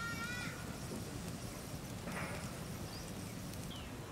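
Livestock bleating: one quavering bleat ending about half a second in and a shorter one about two seconds in, over a low steady rumble.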